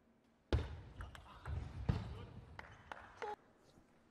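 Table tennis rally: the ball clicking sharply and irregularly off the paddles and table, over low thuds of the players' footwork, starting suddenly about half a second in.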